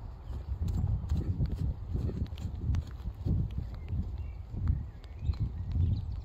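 A Shire horse's hoofbeats, dull low thuds about two to three a second, unevenly spaced, over a steady low rumble.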